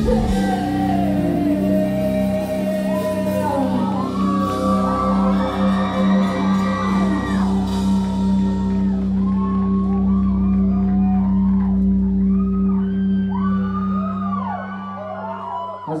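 A rock band's closing chord on electric guitars and bass, held and ringing out through the amplifiers as a steady drone after the drums stop, marking the end of the song. Over it, the crowd cheers with many whoops and screams. The chord cuts off near the end.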